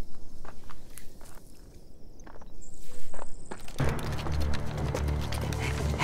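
Scattered footsteps and light knocks on the ground, then a background score comes in about four seconds in with low sustained notes.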